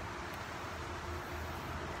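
Steady outdoor background noise, an even hiss over a low rumble.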